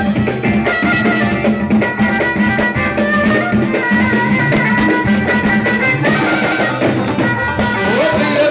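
Live band music: a bowed violin plays a sustained melody over congas and a drum kit.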